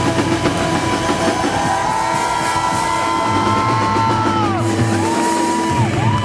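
Live rock band with electric guitars and drum kit playing loud. Long held high notes ride over the band and slide down in pitch twice, in the middle and near the end.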